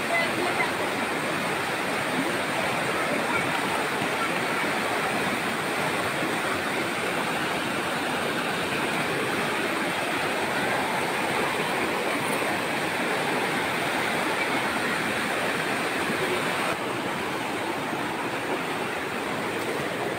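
Steady rushing of a fast, swollen river in flood. It eases a little about three-quarters of the way through.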